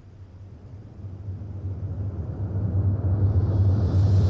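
A low rumbling drone in the score, swelling steadily louder and growing brighter toward the end.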